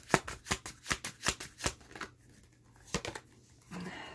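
A deck of oracle cards being shuffled by hand. There is a rapid run of card snaps for the first couple of seconds, then a few scattered clicks about three seconds in.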